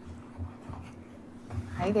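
Faint rustles and light knocks of papers and a laptop being handled at a table, over a steady low room hum; a voice says "hi there" near the end.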